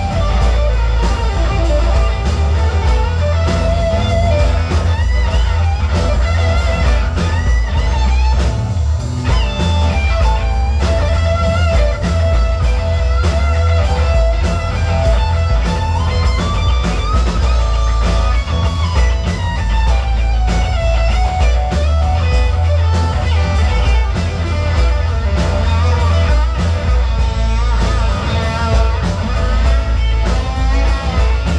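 Live rock band playing an instrumental passage with no singing. A lead electric guitar line with bent, sliding notes plays over bass guitar, rhythm guitar and a drum kit, loud and steady throughout.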